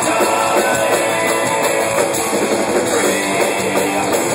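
A live rock band playing loudly and steadily, with guitar and a drum kit.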